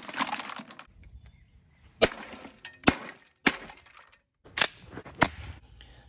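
Cold Steel expandable steel baton striking a plastic electronic device, about five sharp hits over a few seconds, with the plastic housing cracking and breaking apart.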